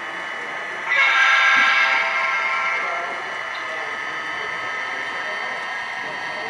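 Horn from the sound system of an HO-scale SD70MAC model locomotive, a held chord of several tones. It swells louder about a second in, then eases back and holds steady.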